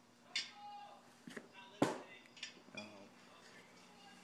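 A handful of sharp clicks and light knocks, the loudest a little under two seconds in, over a faint steady hum.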